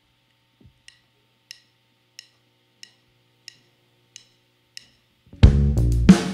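A drummer's count-in: seven sharp stick clicks evenly spaced about two-thirds of a second apart, then near the end the full band comes in loud at once with drum kit, bass and electric guitar, under a faint amplifier hum in the quiet part.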